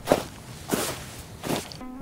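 A person's footsteps walking outdoors, three steps about 0.7 s apart.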